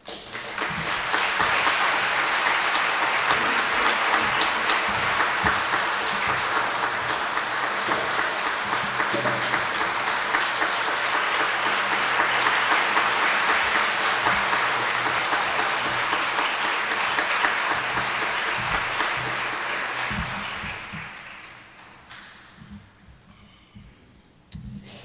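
Audience applauding steadily for about twenty seconds, then dying away near the end.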